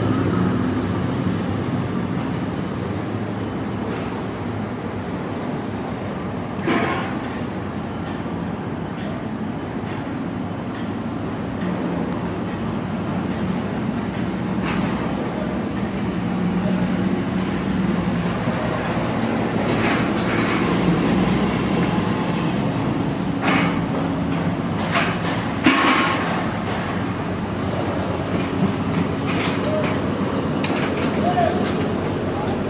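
Steady low rumble of heavy engines and street traffic, with a few short sharp clatters in the second half.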